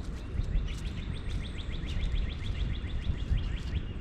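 A small bird's rapid trill, about eight short notes a second, starts about half a second in and lasts about three seconds, over a steady low rumble.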